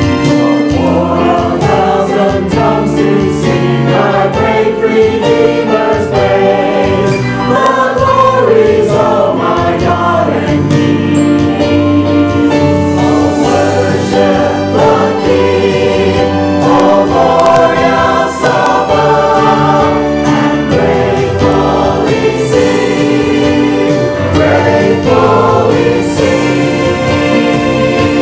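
Mixed church choir of men and women singing a gospel hymn, accompanied by keyboard.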